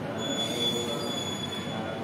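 A thin, high-pitched squeal holding one steady pitch for most of two seconds, starting just after the start, over a low murmur of voices.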